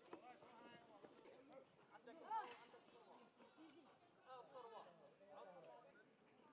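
Faint voices of people talking at a distance, low and indistinct, with no clear single event standing out.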